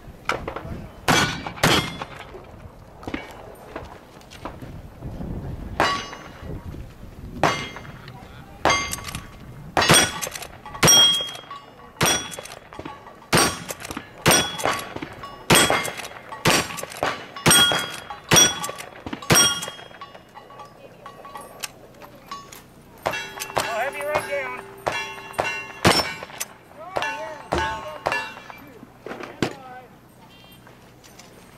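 A fast string of gunshots in a cowboy action shooting stage, about twenty shots over the first twenty seconds, many followed by the brief ring of hit steel targets. Two more shots come near the end.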